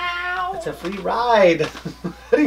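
A person singing a snatch of a song in a high voice: a long held note that slides slowly down, then a run of swooping notes.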